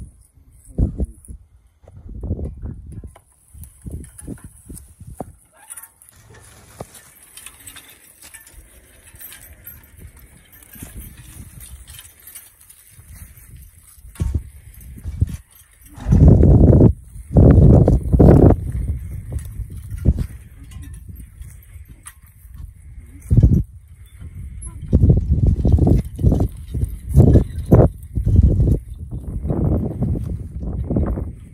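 A team of two Belgian mules pulling a walking plow through garden soil: harness, chains and plow rattling, and hooves on the ground. Loud low buffeting on the body-worn microphone for a few seconds past the middle and again near the end.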